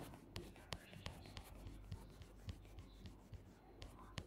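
Faint, irregular small clicks and light rubbing, the sound of a fingertip tapping and sliding on a phone's touchscreen, over a low steady hum.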